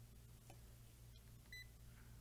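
A digital multimeter gives one short, high beep about one and a half seconds in, over a faint steady low hum.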